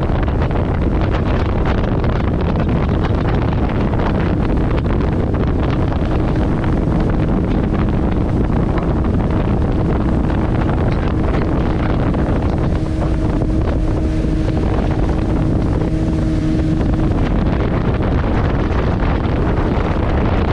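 Motorboat under way: its engine running at a steady pitch, with wind buffeting the microphone.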